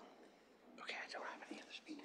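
Faint, low voices of people talking away from the microphone, almost a whisper, starting a little under a second in.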